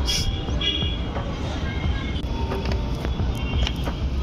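Outdoor city background noise: a steady hum of distant road traffic under a heavy low rumble.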